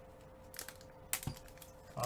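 A few short crackles and clicks from a plastic trading-card pack wrapper being handled and torn open, the loudest a little over a second in.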